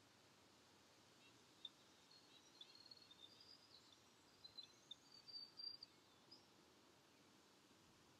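Near silence outdoors, with faint high-pitched bird chirps and short song phrases, busiest about four to six seconds in.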